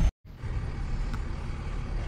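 Low, steady vehicle rumble heard from inside a car's cabin, after a brief cut to silence at the very start.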